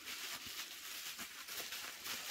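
Faint rustling and handling noise, with many light ticks and clicks.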